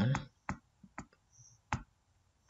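Computer mouse clicking: three short, sharp single clicks, with a couple of fainter ticks between them.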